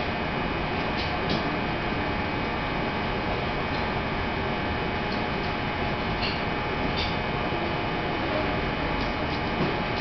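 Steady, even rushing noise with a low hum and a few faint clicks over it.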